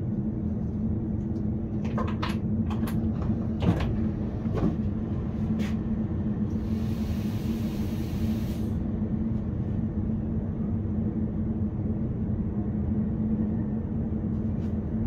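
A Škoda RegioPanter electric multiple unit standing at a station: a steady hum with a low tone from its onboard equipment, heard from the driver's cab. Several clicks and knocks come in the first few seconds, and a hiss lasting about two seconds comes midway.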